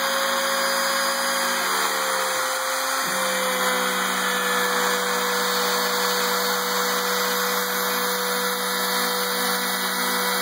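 Router spindle of a home-built CNC machine running steadily while its bit planes the spoil board, a high whine over a dense cutting hiss. The pitch of the lower hum shifts slightly about two and three seconds in.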